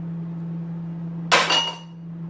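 A thrown metal spoon hitting a ceramic mug or the hard surface around it about a second and a half in: a sharp clink and a quick second hit, with brief ringing, over a steady low hum.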